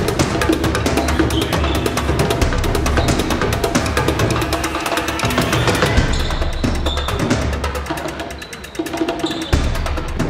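Background music with a steady percussive beat, dipping briefly near the end before picking up again.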